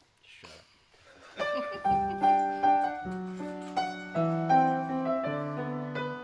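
Upright piano starting to play about a second and a half in, a slow introduction of held chords with a melody over them, each note ringing and fading.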